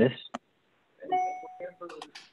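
A brief electronic chime about a second in: a steady tone held for about half a second.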